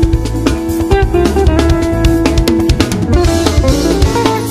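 Live jazz band playing an instrumental: a hollow-body electric guitar carries a single-note melody over drum kit and bass guitar.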